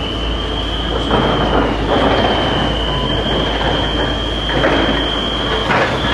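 Construction-site noise: a steady high-pitched whine over a rumble of machinery and wind, with a few swells of broader noise.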